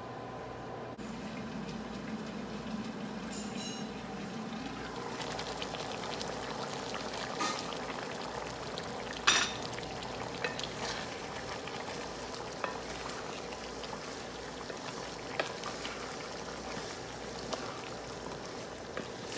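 Beef pochero stew simmering in a pan, a steady bubbling hiss, with one sharp knock about nine seconds in and a few lighter clicks after it.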